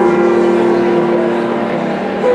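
Background music: a sustained keyboard chord, several steady tones held together and slowly fading.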